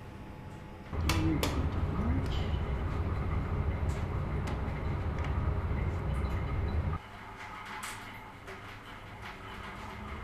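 Steady low hum of a laboratory safety cabinet's fan, with light clicks and clinks of glassware and petri dishes being handled. The hum lasts about six seconds; the rest is quieter room tone.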